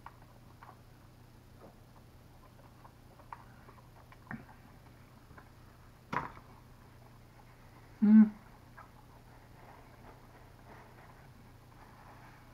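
Faint mouth sounds of a man eating a hot Buffalo chicken wing, with small chewing clicks and lip smacks. A short breathy noise comes about six seconds in, and a brief loud voiced 'mm'-like sound about eight seconds in.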